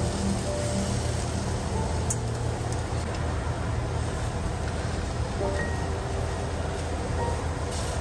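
Eggplant slices frying in oil in a nonstick pan: a steady sizzling hiss, with a few faint clicks of a wooden spatula. Soft background music with held notes plays over it.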